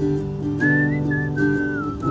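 Acoustic guitar chords strummed under a whistled melody. The whistle is a thin high line that rises and falls and glides downward near the end.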